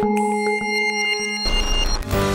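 Electronic intro jingle for a TV segment: sustained synth tones over short ticking beats, with a deep bass coming in near the end.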